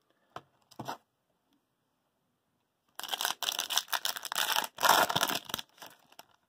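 Plastic wrapper of an Upper Deck hockey card pack being torn open and crinkled: a dense crackling tear starting about three seconds in and lasting nearly three seconds. Before it, two faint light taps in the first second.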